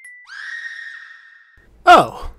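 A shrill, high sound held at one pitch for about a second and a half. A loud voice bursts in near the end.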